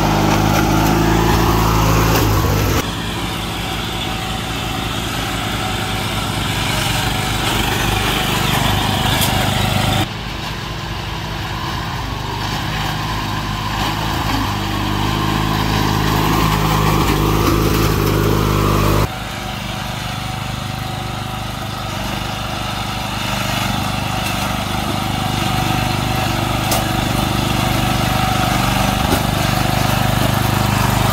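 Riding lawn mower engines running under load, the note steady with some rise and fall; the sound changes abruptly three times where separate clips are cut together.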